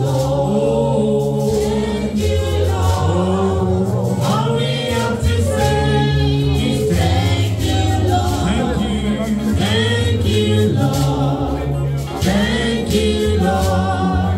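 Gospel song played through a sound system: several voices singing together over a steady bass line and percussion.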